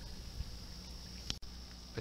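Faint steady outdoor background noise with a low hum, broken about a second and a half in by a short click where the recording cuts.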